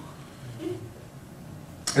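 A pause in the talk: quiet room tone picked up through the handheld microphone, with a faint short sound about two-thirds of a second in and a sharp click just before the voice comes back at the end.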